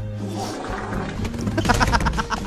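Music from a meme clip mixed with a roaring sound, then a man laughing in quick repeated bursts near the end.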